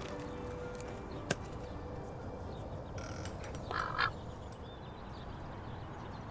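A domestic duck quacking once, a short call just before four seconds in, over a low steady outdoor background. A single sharp click comes a little after one second in.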